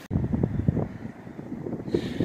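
Wind buffeting the microphone: an uneven low rumble with no clear tones.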